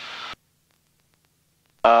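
Steady engine and cabin noise of a Mooney M20C in cruise, heard through the headset intercom, cuts off abruptly about a third of a second in. Near-total silence follows for about a second and a half.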